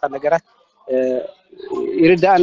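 A man talking, pausing after a few words to let out a short, steady hummed hesitation sound about a second in, then starting to speak again near the end.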